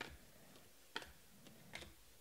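Faint clicks of 2019 Panini Select football cards being flipped one at a time through a hand-held stack, three soft taps about a second apart.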